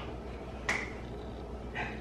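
A quiet room, broken by a single sharp click about a third of the way in.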